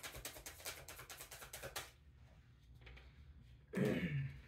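Tarot deck being shuffled by hand: a quick run of soft card clicks for about two seconds, then quieter handling of the cards. A short voice sound just before the end.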